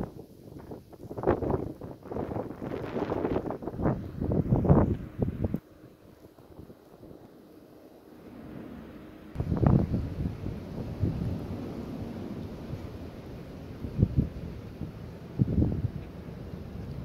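Gusty wind on the microphone, coming and going in irregular bursts, with a quieter lull in the middle.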